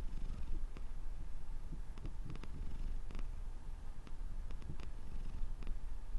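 Domestic tabby cat purring, a steady low rumble.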